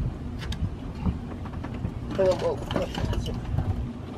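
Steady low rumble, with a few muffled spoken words in the middle.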